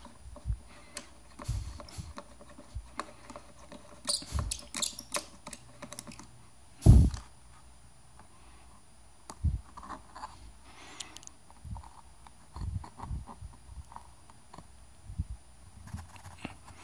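Scattered light clicks and taps of a hand handling and feeling at the screwless battery door on the underside of an ION Block Rocker Max speaker, with one louder knock about seven seconds in.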